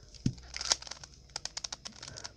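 Stickered plastic 3x3 Rubik's cube being turned by hand, its layers clicking and clacking: a soft knock a quarter second in, then a quick run of clicks in the second half as the layers are twisted to test inverted corner cutting.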